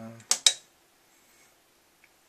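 A trailing 'um', then two sharp clicks close together about half a second in, from hands handling the steel biscuit-tin synthesizer, followed by near silence before the synth sounds.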